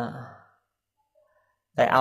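A man preaching in Khmer: a word trails off into a breathy exhale, a pause of about a second follows, and he starts speaking again near the end.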